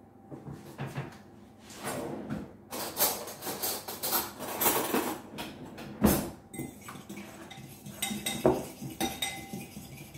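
A metal fork clinking and knocking against a ceramic mixing bowl and other cutlery, in an irregular run of clinks, as egg yolks and cream are beaten together.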